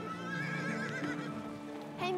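A horse whinnies once, a wavering call of under a second starting about half a second in, over film score music with long held notes.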